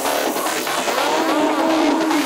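Psytrance track in a breakdown: the kick drum and bassline are out, leaving synth lines that swoop up and down in pitch.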